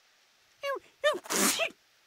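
Cartoon dog sneezing, set off by pepper it has sniffed up: a short voiced sound about half a second in, then a pitched intake breaking into a loud, noisy sneeze about a second in.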